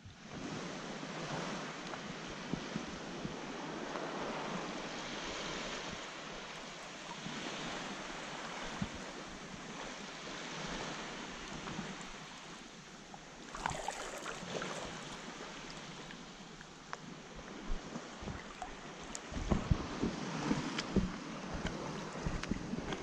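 Small waves lapping and washing in shallow water right at the microphone, rising and falling every few seconds, with some wind on the microphone. Near the end there is louder, irregular sloshing and splashing.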